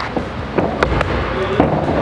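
Sneaker footfalls of a run-up and thuds of a foot striking a parkour wall and landing on the gym floor during a wall flip, a handful of sharp knocks in under two seconds.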